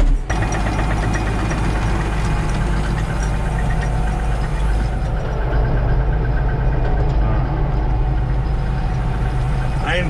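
John Deere 5820 tractor's diesel engine running steadily while driving across a field, heard from inside the cab, with a continuous light rattle over the engine sound.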